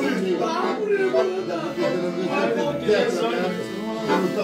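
Piano accordion playing a tune, with a voice over it.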